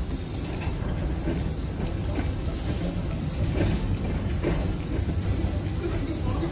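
Container freight train rolling past: a steady low rumble of the wagons on the rails, with faint irregular clicks and clanks from the wheels and couplings.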